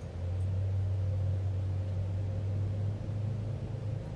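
A low, steady rumble that comes up about a quarter second in and eases off after about three seconds, over a faint steady hum.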